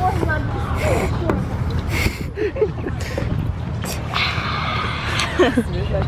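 Voices talking and laughing indistinctly over a steady low rumble, with a few short clicks and a hiss lasting about a second, about four seconds in.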